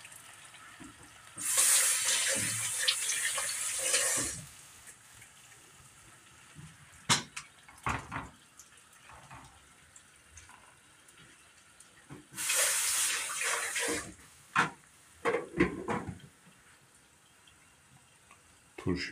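Kitchen tap running in two short spells, one about three seconds long near the start and one of under two seconds later on, with a few short knocks in between.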